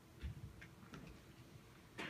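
Near silence in a hushed concert hall, broken by a soft thump about a quarter second in and a few faint, scattered clicks. No music is playing.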